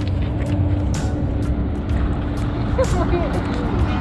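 A motor vehicle running with a low, steady rumble, under background music.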